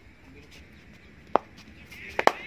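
A single sharp knock about one and a half seconds in, over quiet background noise.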